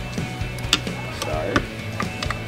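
Electric guitar being lifted out of a guitar rack: two sharp knocks as the instrument's body and hardware bump the rack, about a second apart. Underneath is low background music.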